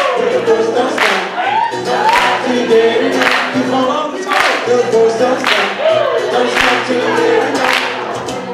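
Live acoustic song: an acoustic guitar strummed under several voices singing, with a sharp accent on the beat about once a second.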